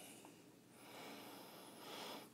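Faint sniffing into a glass of beer held at the nose, a little louder in the second half.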